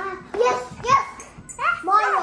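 Young children talking in short, high-pitched utterances, several voices in quick succession, with the words too unclear for the transcript.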